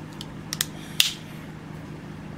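A DJI Osmo Action action camera being pressed into its plastic frame mount: a few small plastic clicks and taps, the loudest a sharp snap about a second in.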